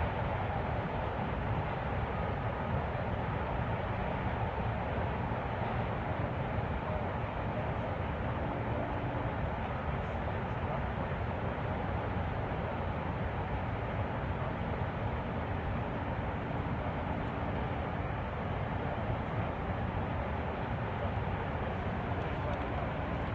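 Steady rushing noise of water pouring down the overflowing Oroville Dam spillway, an even, unbroken sound.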